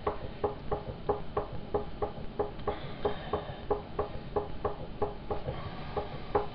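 A potter's wheel turning with an even knock, about four times a second, as clay is thrown off the hump.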